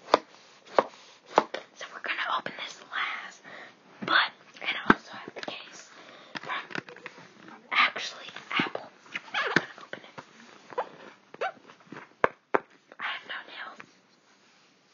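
An Apple Pencil box being unboxed by hand: cardboard and paper sliding and rustling, broken by frequent sharp taps and clicks.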